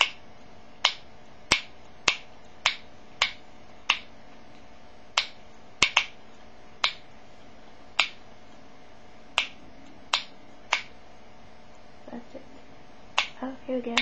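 Sharp plastic clicks from the twist dial on the base of a Sure Maximum Protection cream antiperspirant stick, turned notch by notch. This is first-use priming, winding the cream up to the holes in the top. The clicks come at an uneven pace of roughly one or two a second, with a couple of short pauses.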